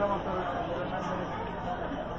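Speech: people's voices chattering.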